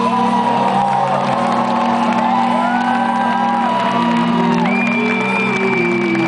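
Live rock band holding a sustained chord at full volume, heard from among the audience, with fans shouting and whooping over it and a few high whistle-like tones gliding up, holding, then falling away.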